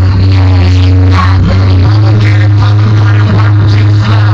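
Electronic dance music played loud through a car's audio system, with heavy sustained bass notes that step up in pitch about two seconds in.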